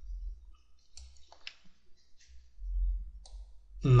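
A few light, scattered clicks from handwriting on a computer with a mouse or pen, over a low rumble of desk or microphone handling that swells near the end.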